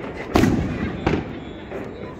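Aerial firework shells bursting overhead: two sharp bangs about two-thirds of a second apart, the first slightly the louder.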